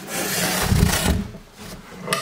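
Rigid foam insulation board rubbing and scraping against a wooden track as it is slid along, for about the first second, then dying away.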